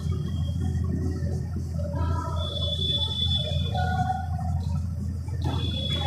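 Whiteboard marker writing on a whiteboard, with thin, faint high squeaks, over a steady low hum.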